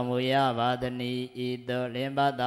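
A monk's male voice chanting Pali scripture in a steady, nearly level-pitched intonation, the syllables running on with barely a pause.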